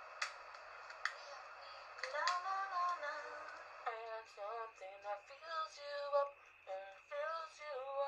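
A woman singing unaccompanied in short phrases, starting about two seconds in, after two clicks.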